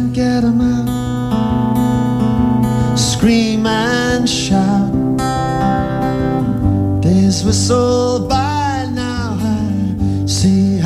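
Live acoustic guitar and mandolin playing a song's opening riff, with a wordless sliding "woo" vocal line sung over it twice.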